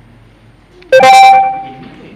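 A sudden loud pitched sound about a second in, several steady tones at once, that holds for about half a second and then fades away.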